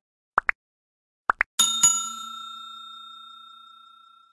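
Subscribe-animation sound effect: two pairs of quick rising blips, then a bell-like ding, struck twice close together, that rings on and slowly fades.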